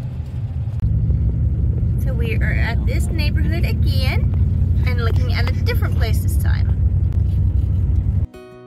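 Road noise inside a moving car: a steady low rumble of tyres and engine.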